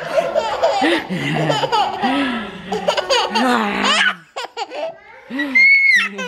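A toddler laughing hard in repeated bursts of giggles and belly laughs, breaking off about four seconds in, then a high-pitched squeal of laughter near the end as she is tickled.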